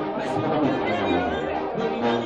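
Live Mexican banda brass band playing, a tuba among the brass, with voices of the crowd close by.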